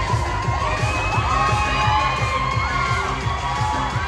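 Dance music with a steady beat, with a crowd of children cheering and shouting over it; high excited shrieks rise and fall above the music.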